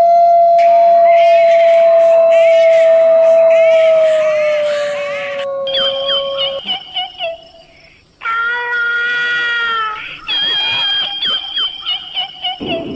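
Eerie horror sound effects: one long howl held for about six seconds, sinking slightly at the end, with chirping sweeps over it. Then come shrill wailing cries that break off and start again.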